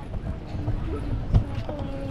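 Indistinct voices of people around, over a steady low rumble, with one sharp knock a little past halfway.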